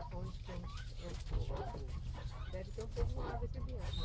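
Indistinct talking inside a bus cabin, over the bus's steady low engine rumble.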